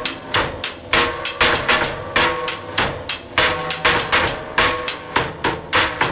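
Instrumental rap backing beat: sharp percussion hits in a steady rhythm, about three to four a second, under a repeating melodic line.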